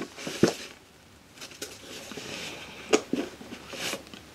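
Hands rummaging inside a leather camera case: soft rustling and rubbing, broken by a handful of light clicks and knocks as small metal items inside are moved about.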